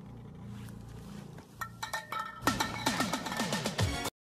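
Chunks of ice dropped down a deep, narrow borehole in ice, their hits echoing back up the shaft as quick falling 'pew' chirps like a toy laser gun. A low rumble comes first, sharp clicks start about a second and a half in, and a rapid string of falling chirps follows through the second half.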